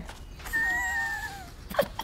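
A person's thin, high-pitched whine, about a second long, that sags slightly at its end. Short, sharp breathy bursts follow near the end.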